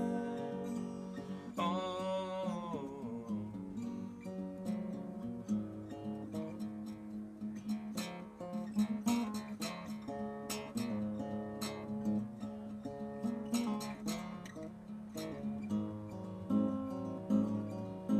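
Steel-string acoustic guitar played solo in an instrumental break, a run of plucked notes over a steady low bass note.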